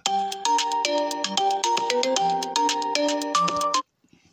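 Mobile phone ringtone: a quick electronic melody of short, clipped notes, ringing for nearly four seconds and then cut off suddenly near the end.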